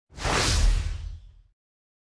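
A logo-intro whoosh sound effect with a deep low rumble beneath it, swelling in quickly and fading out by about a second and a half in.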